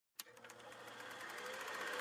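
Opening logo sound effect for an intro: a sharp hit about a fifth of a second in, then rapid even ticking, roughly ten a second, under a swelling drone that grows steadily louder as it builds toward the intro music.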